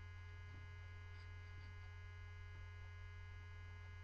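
Steady low electrical mains hum at a low level, otherwise near silence.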